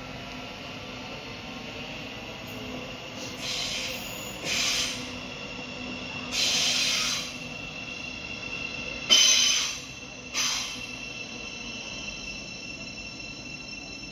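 Electric passenger train running into the station with a steady high-pitched squeal from its wheels on the rails, broken by five louder, brief screeches between about three and eleven seconds in; the loudest comes about nine seconds in.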